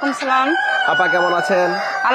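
A flock of Tiger chickens clucking and calling, with a rooster crowing in one long, steady call through the middle.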